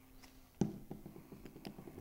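A plastic glue bottle set down on a cutting mat with one sharp tap about half a second in, followed by faint taps and rustles of cardstock pieces being handled.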